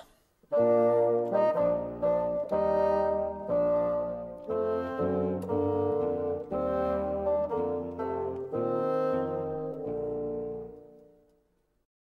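Solo bassoon, a low double-reed woodwind, playing a slow melody of held low notes one after another. It starts about half a second in and fades out near the end.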